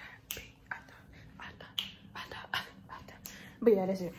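A string of soft, breathy sounds and short, sharp clicks from a person close to the microphone, ending in a brief voiced sound near the end.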